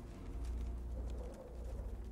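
A soft cooing bird call about a second in, over a steady low drone.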